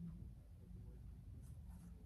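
Faint rustle of a tarot deck being shuffled by hand, cards sliding against each other, a little louder near the end, over a low steady hum.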